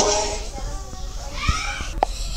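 Music cuts off abruptly at the start, leaving a child's faint voice in the background and a single short tap about halfway through.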